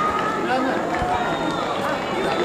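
Many people talking and calling out at once, overlapping voices of a small crowd, none of them standing out clearly.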